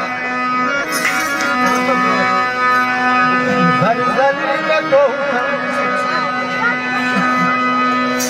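A harmonium plays long held chords while a man sings a Kashmiri naat through a microphone. His voice wavers in ornamented phrases around the middle.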